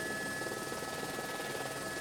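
Faint, steady helicopter cabin noise: an even hum of engine and rotor with a couple of thin, constant high whines running through it.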